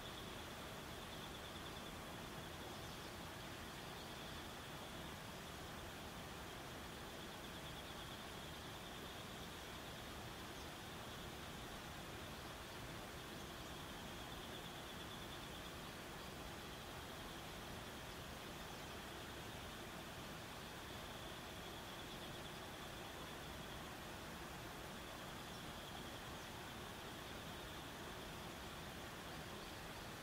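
Faint, steady outdoor background hiss with a thin, high-pitched buzz that swells and fades every few seconds.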